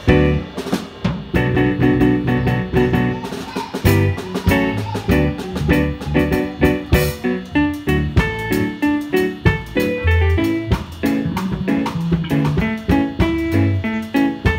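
A live band playing an instrumental reggae groove: electric bass guitar, drum kit and electronic keyboard together, with a steady beat.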